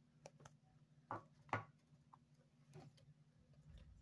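A few faint clicks and taps of rigid plastic card holders being handled and set down on a wooden tabletop, the two clearest a little after one second in, over a steady low hum.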